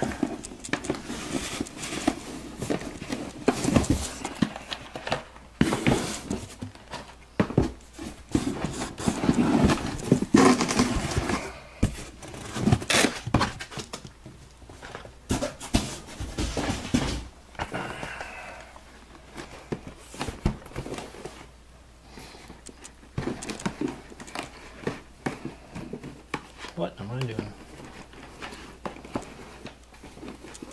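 Irregular knocks, clicks and crinkling from cardboard hobby boxes and their plastic wrap being handled, with some indistinct low talk.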